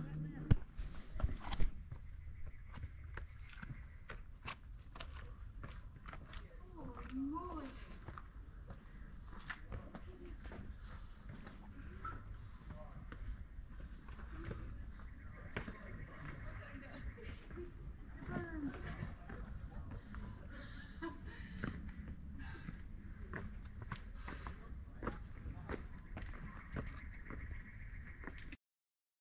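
A hiker's shoes scuffing and knocking on bare rock and grit while scrambling up a steep rocky trail: irregular small clicks and scrapes over a steady low rumble. A few faint voice sounds come through about a quarter of the way in and again past the middle.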